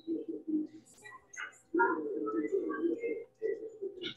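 Birds calling in the background: repeated low cooing calls, with scattered short chirps over them.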